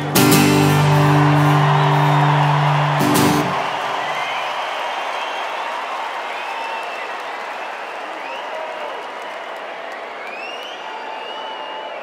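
A final strummed guitar chord is struck and rings out, then stops about three seconds in. A large stadium crowd is left cheering, with scattered whistles, slowly dying down.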